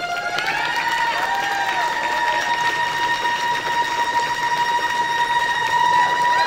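Solo violin stepping up to a long, sustained high note, while the audience applauds and cheers over it with scattered whistles.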